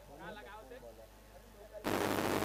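Faint voices in the background, then near the end a sudden loud burst of even static hiss that cuts in abruptly: a noise glitch on the live-stream audio.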